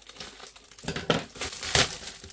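Scissors cutting through the tape on a gift-wrapped box, with the wrapping paper crinkling: a run of rustles and snips that starts about a second in and is loudest near the end.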